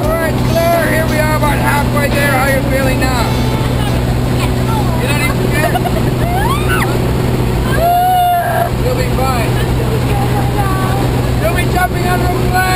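Steady drone of a small jump plane's engine heard from inside the cabin, with voices calling out over it in rising and falling pitch.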